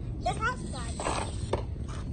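Brief snatches of voice with no clear words, over a steady low background rumble.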